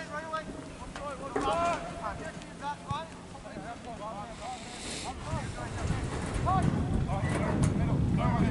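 Distant shouts of players calling to each other across an outdoor soccer field, with wind buffeting the microphone, growing stronger in the second half.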